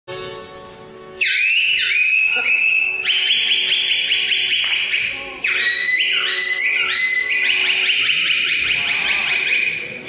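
Aromanian folk band music. After a quieter opening of about a second, a loud, very high lead melody comes in with rapid vibrato and notes that slide down into pitch, over a lower sustained accompaniment.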